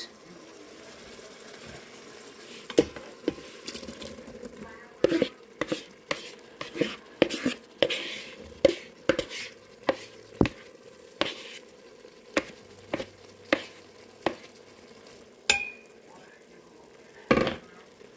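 Diced potatoes tipped into the stainless steel inner pot of an Instant Pot and stirred with a plastic spatula: irregular clacks and scrapes against the pot over a faint steady sizzle of the sautéing oil.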